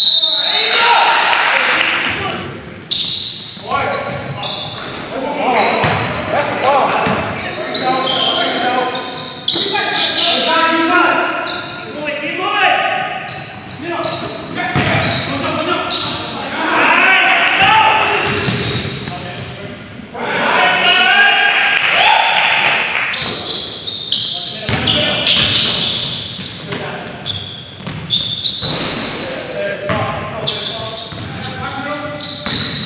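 Basketball game sounds in a large, echoing gym: a basketball bouncing on the hardwood floor, with players' voices and shouts on the court.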